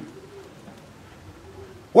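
A dove cooing faintly in the background, two soft low calls in a pause between a man's spoken phrases.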